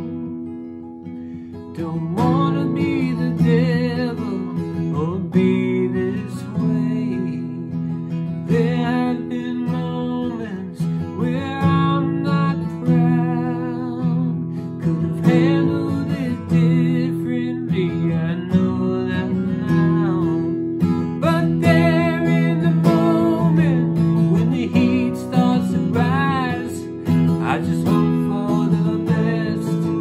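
A man singing a slow song while playing an acoustic guitar, the voice coming in over the guitar about two seconds in.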